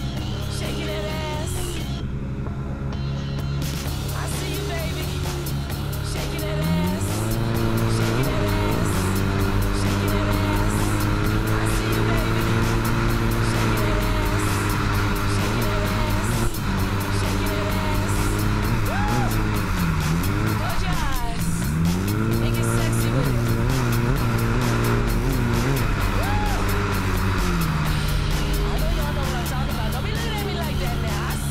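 Hydrospace S4 jet ski engine running at speed, its pitch rising and falling several times as the throttle is opened and eased, with a song with vocals playing over it.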